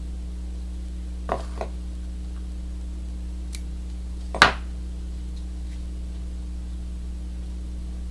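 Steady low electrical hum, with one short sharp click about four and a half seconds in.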